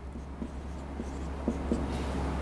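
Marker pen writing on a whiteboard: a faint rubbing with a few light ticks as the strokes of the numbers are made, over a steady low hum.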